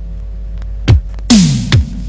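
Electronic intro music: a steady low hum, then about a second in, synth drum hits start. Each hit drops quickly in pitch, in the manner of electronic toms, and comes with a noisy snare-like crash.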